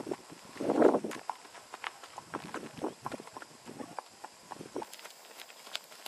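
Icelandic horses' hooves clip-clopping at an uneven pace. There is a short, louder puff of noise about a second in.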